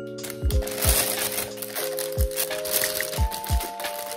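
Background lo-fi music with steady chords and a soft drum beat, over the crinkling and rustling of a thin plastic piping bag as a silicone spatula scoops a thick mixture into it, starting a moment in.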